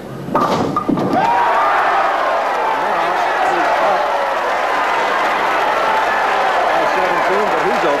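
Bowling ball hitting the pins with a short crash about half a second in as the 7-10 split is converted, then a crowd erupting into loud, sustained cheering and shouting.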